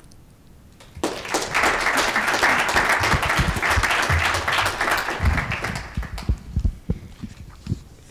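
Audience applauding, starting about a second in and dying away near the end, with a few low thumps underneath.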